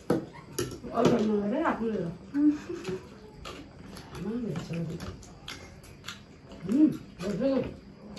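Voices in short bursts of murmuring and exclamation from people eating, with metal forks clicking against plates between them.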